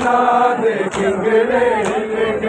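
Men's voices chanting a Muharram lament (noha) in unison, with sharp unison chest-beating slaps (matam) about once a second.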